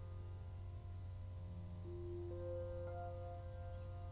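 Quiet ambient meditation music of long held notes over a low steady drone, with crickets chirping in a slow, even pulse of about two chirps a second.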